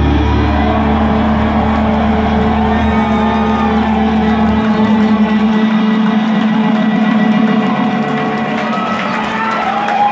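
Live psychedelic rock band holding a sustained, droning chord through the PA; the deep bass note drops out about halfway through, and the crowd starts cheering near the end as the piece closes.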